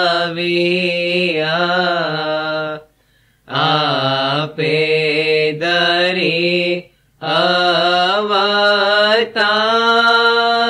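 A solo voice chanting a ginan devotional hymn, unaccompanied, in long wavering sung phrases broken by two short breath pauses.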